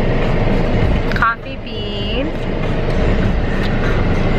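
Car cabin noise: a steady low rumble of engine and road, with a brief dip about a second in.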